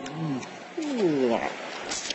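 A man's wordless vocalising: a short rise and fall in pitch, then a longer, louder slide in pitch about a second in.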